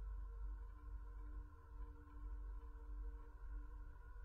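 Faint steady drone of a few held tones over a low hum, starting and cutting off abruptly.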